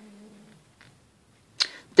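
A woman's soft, steady hum at speaking pitch for about half a second, then near quiet, with a short sharp sound just before speech resumes near the end.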